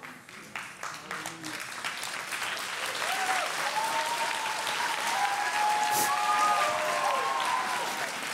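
Audience applauding, the clapping building over the first few seconds, with voices cheering and calling out from about three seconds in.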